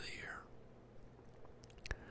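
Close-up soft whispered speech: a last word trails off and fades in the first half-second, then near quiet with a faint mouth click just before the end.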